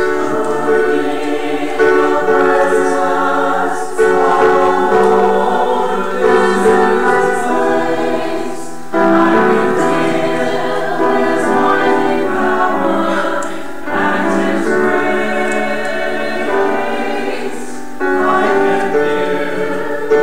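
Church choir singing sacred music, held chords in phrases a few seconds long.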